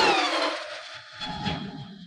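Logo-intro sound effect: a loud whoosh dies away with tones sliding down in pitch, then a second, softer swell comes about a second and a half in, with a low hum that fades out.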